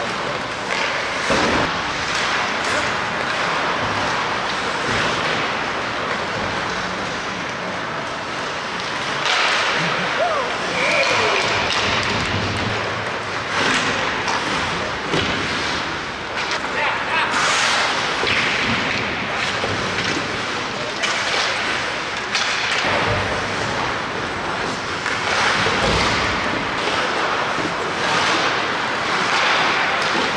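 Ice hockey game in play on an arena rink: skate blades scraping the ice, sticks clacking and repeated thuds of the puck and players against the boards, with players' voices calling out.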